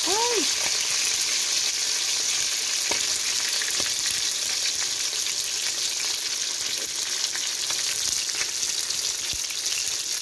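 Whole fish frying in oil in a metal wok, a steady sizzle, with a few light clicks of a metal spatula against the pan; the fish is not yet done.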